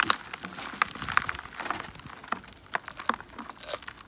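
Soil and dry roots rustling and crunching as Chinese artichoke tubers are dug out, with many irregular crackles and scrapes.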